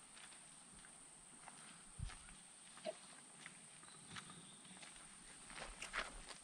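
Near silence outdoors: a faint steady high hiss with a few soft, scattered taps and scuffs, the clearest about two seconds in and just before the end.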